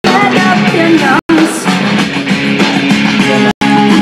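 Rock song recording played back loud: a sung lead vocal over electric guitar and a full band. The sound cuts out completely for an instant about a second in and again near the end.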